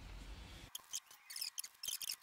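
Hand-held Simpson Crack-Pac plastic epoxy cartridge with its injection hose attached, being shaken to mix its two epoxy parts. Quiet, irregular short plastic clicks and rattles a few times a second, starting under a second in.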